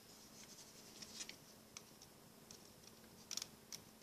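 Faint, scattered small clicks and rubbing of rubber loom bands being pushed down over the plastic pins of a Rainbow Loom, with a few sharper clicks near the end.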